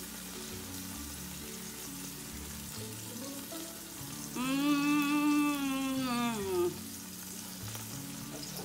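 A woman hums one long appreciative "mmm" with her mouth full while eating, starting about four seconds in and lasting a couple of seconds, over soft background music.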